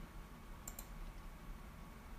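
Two faint computer clicks close together under a second in, over quiet room tone with a low hum.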